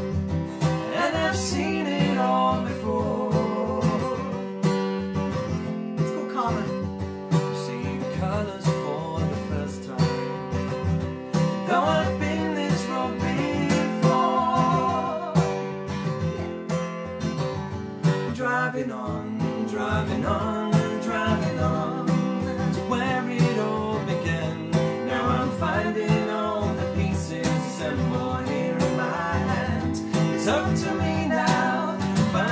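Acoustic guitar strummed steadily while a woman and a man sing a country-folk song.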